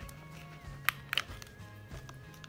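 Metal clasp hardware on a leather wallet clicking as it is closed and fastened: one sharp click just before a second in, then two quick clicks right after. Soft background music plays underneath.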